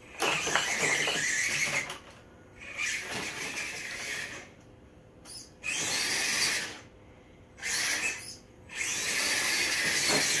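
The electric drive motor and gears of a Barrage RC rock crawler whine in about five short bursts of throttle, each a second or two long, with pauses between, as the truck is driven over and around rocks.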